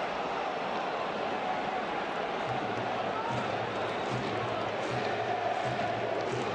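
Football stadium crowd noise: a steady mass of spectators' voices with no single voice standing out.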